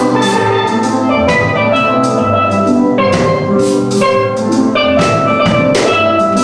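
A steel drum orchestra playing a tune: many steel pans ringing out struck notes together, backed by a drum kit keeping a steady beat.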